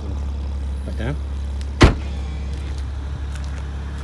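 BMW Z4 35is's twin-turbo straight-six idling steadily, with the boot lid slammed shut once, loudly, about two seconds in.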